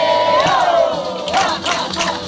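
Several voices singing together in a live folk song, holding one long, loud shouted note for about a second and a half before it breaks off into shorter sung cries.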